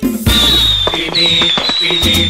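A fireworks sound effect crackling over merengue dance music, which cuts back in suddenly at the start, with a steady high whistle running through it.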